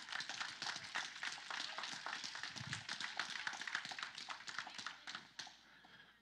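Congregation clapping, a dense patter of many hands, dying away about five seconds in.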